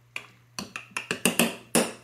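Metal spoon knocking and scraping against the sides of a glass jar while stirring a thick oat mixture: a quick run of about ten clinks, loudest in the second half.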